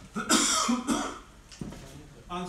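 A man coughing, a short fit of rough coughs that is loudest in the first second and then dies down.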